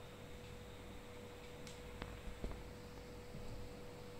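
Quiet room tone with a faint steady hum, and two faint clicks about two seconds in.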